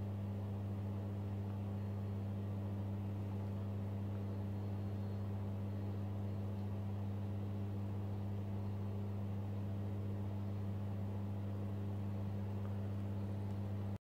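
A steady low electrical hum with a fainter overtone an octave above, over light hiss, unchanging throughout.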